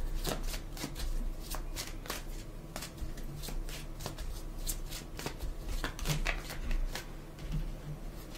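A deck of tarot cards being shuffled by hand, overhand style: a steady run of quick, irregular card clicks and slides.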